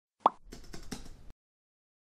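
Intro sound effects: a single short pop, then a quick run of faint clicks lasting about a second.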